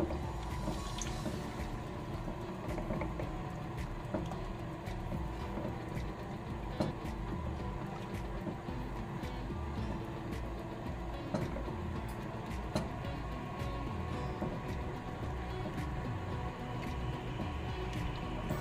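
Pasta shells boiling in water in a large enamelware roasting pan, stirred with a plastic spoon that now and then scrapes or taps the pan.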